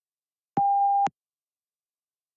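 A single electronic beep, one steady tone of about half a second, sounding about half a second in. It is the cue that the read-aloud recording has started.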